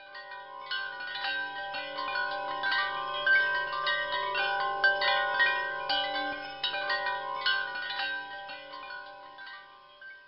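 Chimes ringing: many overlapping bell-like notes struck at a quick, irregular pace, swelling in over the first second and dying away near the end.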